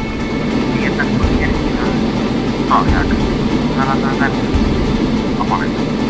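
Loud, steady aircraft engine drone, with a few brief muffled voice fragments heard over it.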